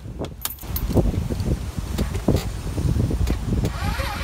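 Keys jangling and clicking at a scooter's ignition as the key is put in and turned, with scattered rattles and rumbling handling noise; the scooter does not start.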